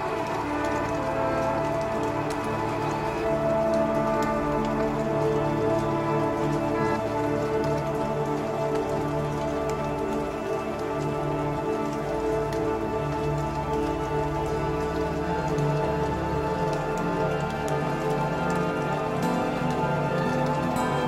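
Ambient electronic music: layered, sustained drone tones held over a steady hiss flecked with fine crackles.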